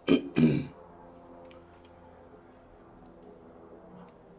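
A man clears his throat in two short, loud bursts at the start, followed by quiet room tone with a few faint clicks.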